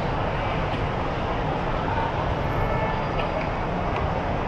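Steady background din of a crowded airport terminal hall: a constant low rumble with indistinct crowd noise and no clear voice standing out.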